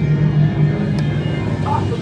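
Low, droning haunted-attraction soundtrack of steady held tones, with one sharp click about a second in and people's voices coming in near the end.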